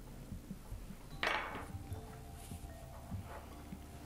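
Hands handling a knitted-yarn macramê plant holder with wooden beads on a wooden table: a short clatter about a second in, then faint small knocks and rustles.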